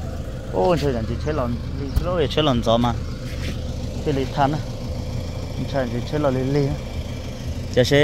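A pickup truck's engine idling steadily under people talking, with one sharp knock about two seconds in.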